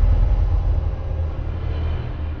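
A deep, steady rumble from an animated logo intro's sound effects. It is loudest at the start and settles a little about a second in.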